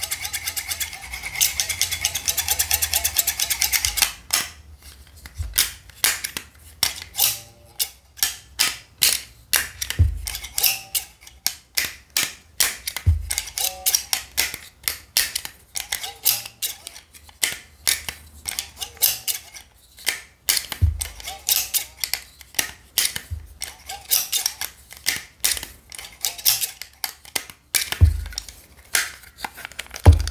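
Close-up handling of an opened metal stapler: a fast rattle of clicks for the first few seconds, then a long run of separate clicks and snaps from its metal track and spring, with an occasional dull thump.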